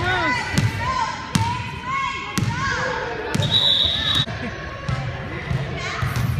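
Basketball being dribbled on a hardwood gym floor, a sharp bounce about once a second, with children's voices around it.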